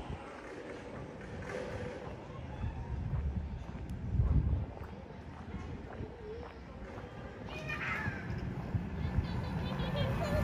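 Quiet city street ambience: an uneven low rumble with a louder swell about four seconds in, and faint distant voices.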